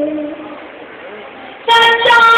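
A ghazal being sung: a held note fades out, a short lull follows, and near the end a new loud, steady held note comes in.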